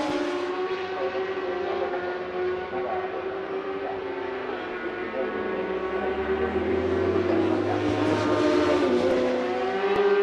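Several JSB1000 superbikes' 1000cc four-cylinder engines at racing revs, their notes overlapping and rising and falling with throttle and gear changes as they lap the circuit.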